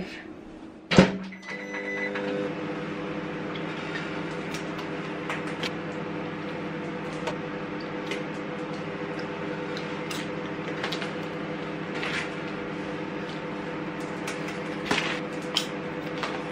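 Microwave oven: a sharp click and a short beep, then the oven running with a steady electrical hum. Faint crinkles of a snack bag come and go over the hum.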